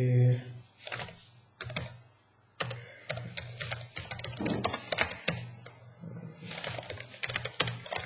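Computer keyboard typing: rapid keystrokes entering a command, in two runs with a pause of about a second between them.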